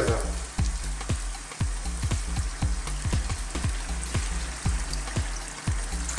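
A thin stream of water poured into a pot of chicken and yellow split pea stew, splashing steadily into the hot liquid.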